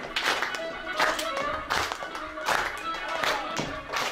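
Azerbaijani folk dance music with a strong beat about every three-quarters of a second, and hands clapping along in time.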